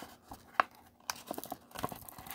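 Paper blind bag crinkling as fingers pick and tug at its perforated tear strip, in short scattered crackles with one sharper snap about halfway.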